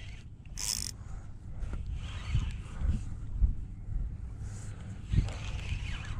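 Low wind rumble buffeting the microphone over choppy open water, rising and falling, with one short high hiss a little over half a second in.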